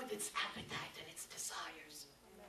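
A woman speaking into a handheld microphone.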